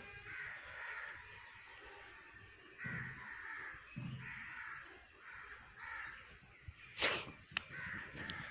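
Crows cawing: a series of harsh calls about once a second. A short, louder sound comes near the end.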